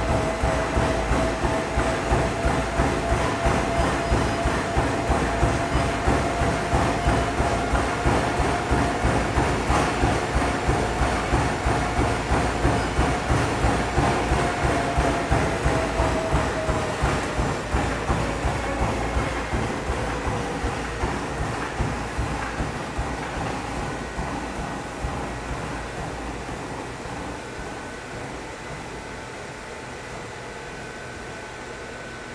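Treadmill with a runner sprinting: quick, even footfalls on the belt, about three a second, over the steady whine of the drive motor. From about two-thirds of the way through, the whine falls in pitch and the footfalls grow softer as the belt slows to a walk.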